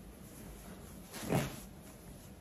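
A single dull thump about a second and a half in, like an object being knocked or set down, over faint room tone.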